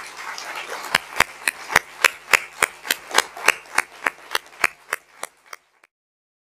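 Audience applauding, with one person's sharp claps standing out in a steady beat of a little over three a second; the applause fades out near the end.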